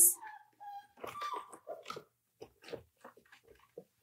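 Five-week-old German Shorthaired Pointer puppy whining: a few short high whines in the first two seconds, then faint scattered scuffs.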